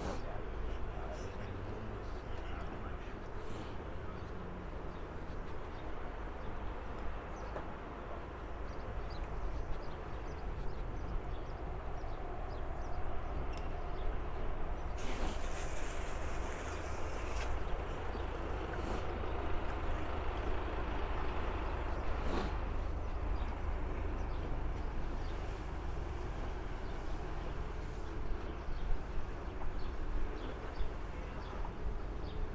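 Steady outdoor background noise with a constant low rumble, and a brief burst of hiss about halfway through.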